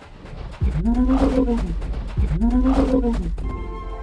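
Film sound effect of a cartoon dragon's vocal calls: two drawn-out calls, each rising then falling in pitch, with a short gap between them, over a low rumble.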